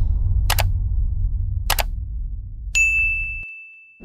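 Subscribe-animation sound effects: two quick mouse clicks about a second apart, then a notification bell ding that rings on and fades, over a low rumble that fades out.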